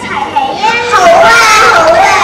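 Young children speaking in high, loud voices.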